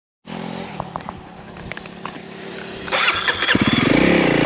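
Honda CRF300L's single-cylinder engine ticking over with a few light clicks. About three seconds in it revs up and gets louder as the bike pulls away.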